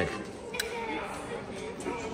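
Faint background voices and room hum of an indoor public space, with a single short click about half a second in.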